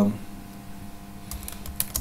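Typing on a computer keyboard: a quick handful of keystroke clicks in the second half.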